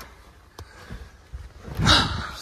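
Low wind rumble on the phone's microphone, swelling into one loud gust of buffeting near the end.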